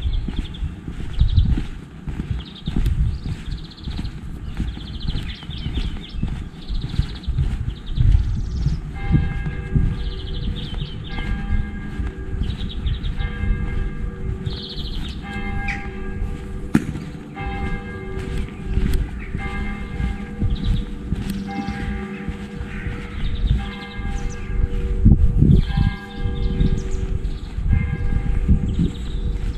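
Church bells ringing, starting about nine seconds in, one strike after another in runs with short pauses. Footsteps on the road thud underneath.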